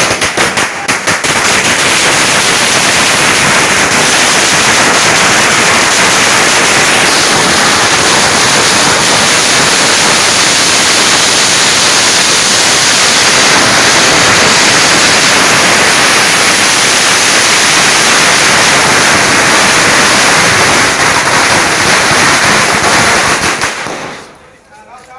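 A long string of firecrackers going off: a few separate bangs at first, then a continuous, very loud rapid crackle of reports that dies away just before the end.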